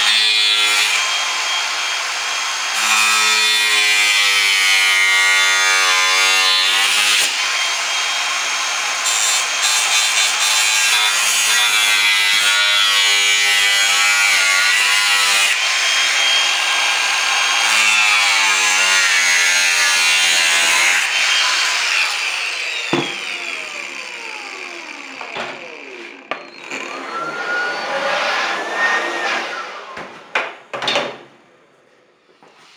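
Angle grinder with a thin cutting disc cutting into the corner of an aluminum composite panel, running loud and steady under load with its whine wavering as the disc bites. A little over two-thirds of the way through it is switched off and its whine falls as it winds down, followed by a few sharp clicks.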